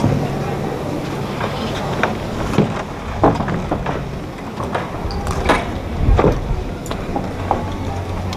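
Indistinct, murmured voices over a low steady hum, with scattered short knocks and clicks.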